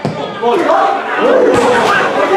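Shouting from several people at a football match: loud, overlapping yells that rise and fall in pitch. There is a dull thump about one and a half seconds in.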